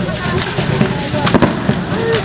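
Irregular sharp clicks and cracks, several a second, from the dancers' hand-held percussion. They sound over crowd chatter, with two close cracks standing out about a second and a half in.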